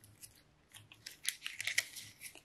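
Crinkling and rustling of the wrapping on a MacBook Air's power adapter and charging cable as they are handled: a few light ticks, then a denser run of sharp crackles in the second half.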